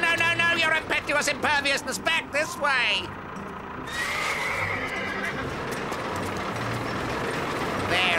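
Horse whinnying and neighing in an animated cartoon, several falling, trembling calls over about three seconds, ending in a quick rising whinny. After a short pause comes a steady rumbling noise.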